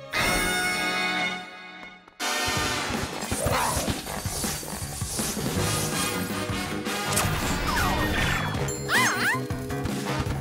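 Cartoon soundtrack: a held musical chord for about two seconds cuts off, then busy action music comes in with repeated crash and impact sound effects.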